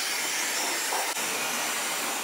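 Dyson hair dryer blowing: a steady rush of air with a faint high whine.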